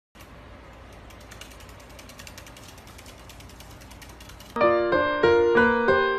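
A faint, fast, dense clicking rattle of unclear source. About four and a half seconds in, it gives way suddenly to much louder piano music playing a bright run of separate notes.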